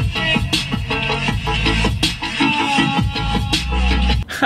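Music with a steady beat and heavy bass playing from the car radio through the 2020 BMW X2's standard seven-speaker, 205-watt sound system, heard inside the cabin.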